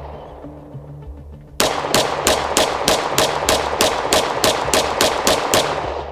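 Strike One ERGAL 9 mm pistol fired in a fast string of about twenty shots, roughly five a second, starting about a second and a half in. The pistol cycles through the magazine with no failures to feed. Background music with steady low tones runs underneath.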